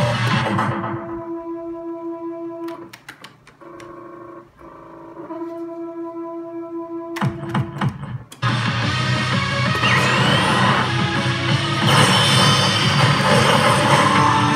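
Pachislot machine sounds: its guitar-backed music fades about a second in, giving way to held electronic tones at a few steady pitches. Sharp clicks come around three seconds in and again a few times near eight seconds, then loud music starts up again.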